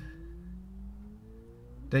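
Low, steady engine hum heard inside a car cabin, with faint tones slowly rising in pitch.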